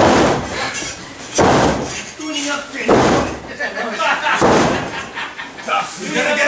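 Heavy thuds on a wrestling ring, four of them about a second and a half apart, with crowd voices in between.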